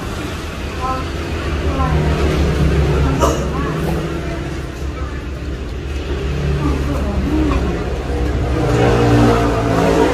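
People talking over a steady low rumble, with one sharp click about three seconds in.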